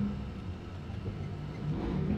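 A low, steady background rumble with no distinct tool or metal sounds.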